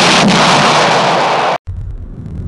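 Cartoon explosion sound effect: a loud blast of noise lasting about a second and a half that cuts off abruptly, then gives way to a quieter low rumble.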